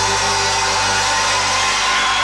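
A live band's final held chord ringing out over audience cheering and applause; the bass drops out about a second in.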